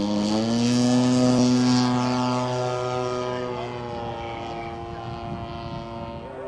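Radio-controlled Edge 540 aerobatic model airplane taking off, its motor and propeller running at full power. The steady tone rises slightly in pitch in the first second, then grows fainter as the plane climbs away.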